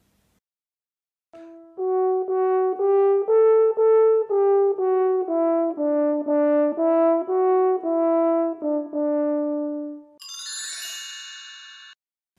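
French horn playing a short tune of about twenty detached notes, ending on a held lower note. Near the end a bright, high ringing sound takes over and fades.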